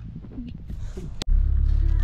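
Faint open-air ambience, then a little over a second in a click and a sudden switch to the steady low rumble of a car's engine and tyres heard from inside the cabin.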